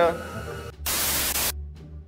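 A short burst of loud static hiss, starting a little under a second in and cutting off suddenly after about two thirds of a second, over a faint low hum.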